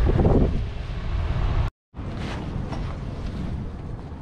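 Wind buffeting the microphone outdoors as a low rumbling hiss. It breaks off in a brief gap of total silence a little under two seconds in, then carries on quieter and steadier.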